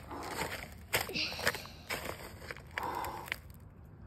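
Footsteps crunching on snow, with scattered sharp clicks and crackles.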